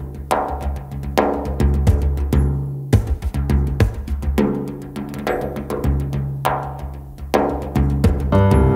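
Instrumental music from a keyboard and percussion duo: struck percussion hits with ringing tails, about one a second, over a low sustained bass, which breaks off briefly about three seconds in.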